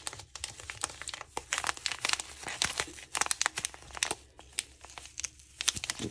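Foil packaging crinkling and crackling as it is handled and crumpled in the hand, in quick, irregular bursts of crackle.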